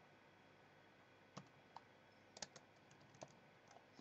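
Faint computer keyboard keystrokes: a handful of separate, uneven clicks of someone typing a few characters.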